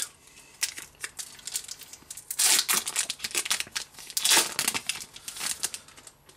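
Pokémon booster pack's foil wrapper being torn open and crinkled by hand, then the cards slid out. Scattered small crackles, with two louder rustling bursts about two and a half and four and a half seconds in.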